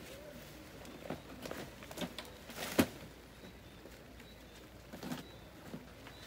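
Scattered snaps and rustles of leafy vines and stems being pulled and broken in a garden bed, with one sharper crack about halfway through.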